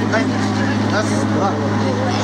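Voices counting aloud in Russian, one number about every half second, in time with chest compressions on a CPR manikin, over a steady low hum.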